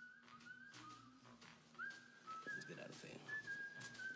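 A faint whistled tune of held notes that step between a few pitches.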